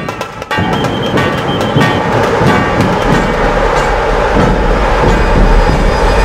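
Dhol-tasha drumming: a dense, fast, continuous roll of stick-beaten drums over a deep bass drum beat, after a brief dip in the first half second.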